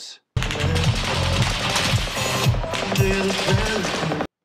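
Phone recording from within a concert crowd: repeated bursts of automatic rifle fire over live band music with a strong bass line.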